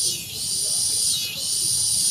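Insects in the trees chirring in a loud, high-pitched chorus that pulses about once a second.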